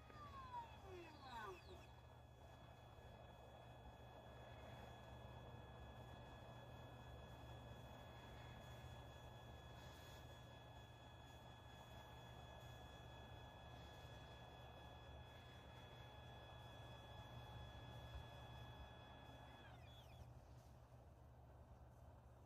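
Explore Scientific iEXOS-100 PMC-8 belt-driven equatorial mount slewing: a faint, steady motor whine made of several high tones. It cuts off sharply a couple of seconds before the end as the slew stops. A few short falling chirps come in the first two seconds.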